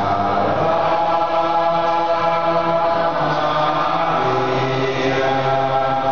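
A group of voices singing the closing hymn of a church service in slow, sustained notes that change every second or so.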